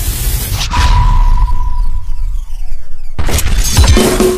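Cinematic logo-intro sound effect: a sharp crashing hit with a deep rumble about half a second in, leaving a ringing tone that fades over about a second and a half. A second loud hit comes near the end as the band's music starts.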